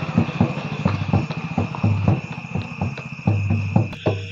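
A steady, shrill high trill like crickets, with rhythmic drum-like beats and low thumps struck several times a second over it.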